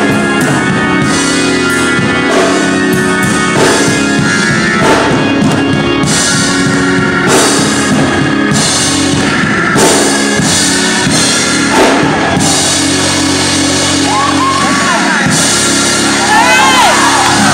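Gospel-style church organ playing full sustained chords with a drum kit keeping a steady beat.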